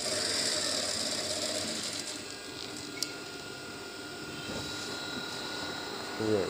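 Industrial sewing machine running as a pocket is stitched onto a kurta front. It is louder for the first two seconds, then settles to a steadier, quieter whine, with a single click about three seconds in.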